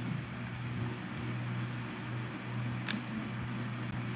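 Steady low hum under a faint even hiss, with one short click about three seconds in.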